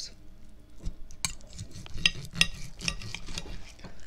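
Knife and fork scraping and clicking on a plate as a steak is cut, with a string of sharp clinks.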